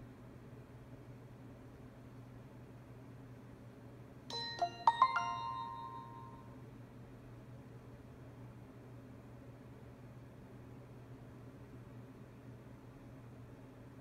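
Alcatel One Touch Fierce 2 smartphone playing its startup chime from its speaker while booting: a quick run of about five bright ringing notes, starting about four seconds in and fading out over about two seconds. A faint steady low hum lies underneath.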